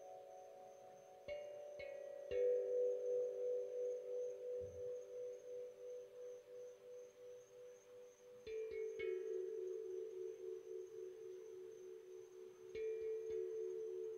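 Struck metal instrument played in three groups of about three notes, near the start, past the middle and near the end. Each strike has a bright attack that fades fast, and the lower notes ring on with a slow, pulsing beat.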